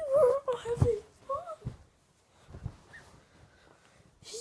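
A young male voice making drawn-out, wordless wailing sounds, loud through the first second, then a shorter rising-and-falling call, then quiet for the second half.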